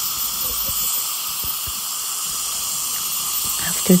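Steady hiss of dental equipment running during ultrasonic scaling of tartar, from the water spray and suction.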